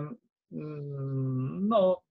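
Speech only: a long, level hesitation hum, a drawn-out "mmm", held for about a second, then the word "no".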